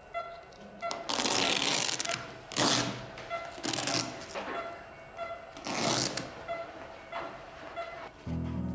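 Patient monitor beeping steadily about twice a second, with several loud bursts of rustling and handling noise as staff move the patient's arms and equipment.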